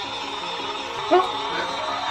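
Battery-powered mini washing machine running just after being switched on: a steady small-motor whir as its drum turns a makeup sponge in water and detergent.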